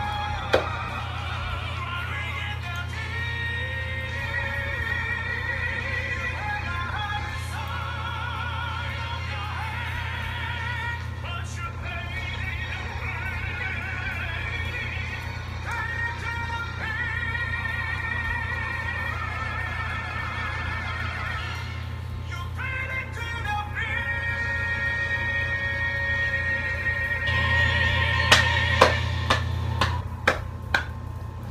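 A classical-crossover male vocal quartet sings a pop song with heavy vibrato over a band backing track, playing back through the video's audio. Near the end come a few sharp hand claps.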